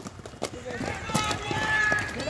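A pack of inline speed skaters striding off the start line, their skate wheels giving a few sharp clicks on the track, with voices calling out in the background from about a second in.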